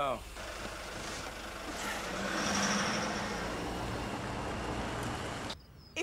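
A car's engine and tyres, the sound swelling to a peak a couple of seconds in and then holding steady before cutting off abruptly near the end.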